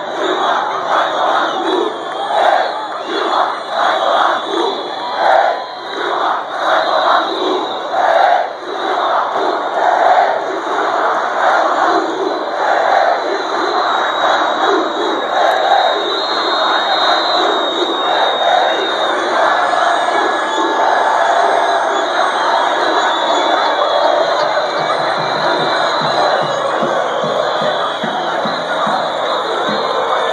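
A large crowd of street protesters chanting in a steady beat, then the chant merges into a sustained, even roar of many voices shouting.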